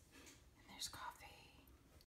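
Near silence: room tone, with a faint whispered voice about a second in.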